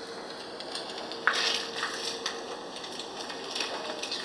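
EVP recording played back through the small speaker of a Tascam DR-05X handheld recorder: steady hiss with a faint steady hum, and a scratchy noise that starts suddenly about a second in. In it the investigators hear a male voice saying "two".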